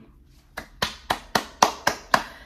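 One person clapping, a run of six sharp claps at about four a second that starts about half a second in.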